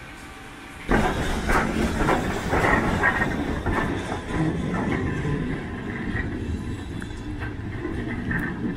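Steam locomotive 76017, a BR Standard Class 4MT 2-6-0, pulling away from a station platform: a loud run of exhaust chuffs about twice a second, with hissing steam, starting suddenly about a second in and slowly fading as the engine draws away.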